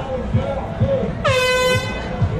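A single air horn blast, a bit over half a second long, about a second in, over a steady low beat and crowd voices.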